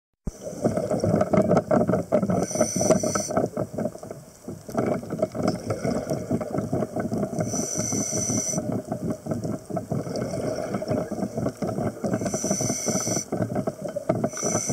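Underwater recording of a scuba diver breathing through a regulator: a short hiss on each inhale, about every five seconds, over continuous bubbling and water noise.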